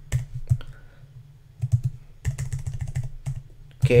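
Typing on a computer keyboard: a few separate keystrokes, then two quick runs of key clicks in the middle.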